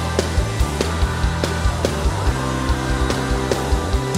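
Live worship band playing, with the drum kit beating a steady rhythm over sustained bass tones.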